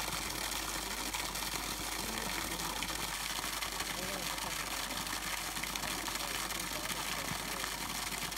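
Steady hiss of a thin jet of water spraying from a hose, with faint voices in the background.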